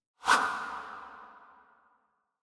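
A whoosh sound effect for an animated logo reveal. It starts suddenly a moment in and dies away over about a second and a half, leaving a ringing tone that fades out near the end.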